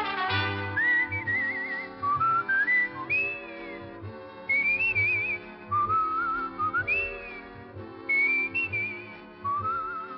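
A radio drama's closing theme: a whistled melody with a wide wavering vibrato, in short phrases, over a soft orchestral backing with brass.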